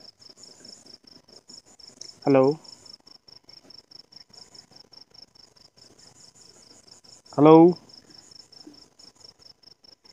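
A cricket chirping steadily in a fast, even high-pitched pulse, about five pulses a second. Two short spoken "hello"s cut in over it.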